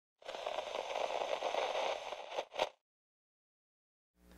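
Crackling, static-like noise for about two seconds, ending in two short bursts.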